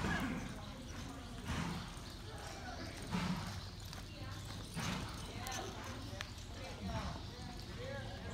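Hooves of a horse ridden on the soft dirt of an arena floor, several dull thuds about every second and a half, with indistinct voices in the background.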